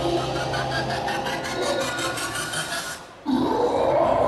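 Dance-show soundtrack over loudspeakers, a stretch of sound effects with a fast pulsing rhythm. It cuts out briefly about three seconds in, then comes back louder.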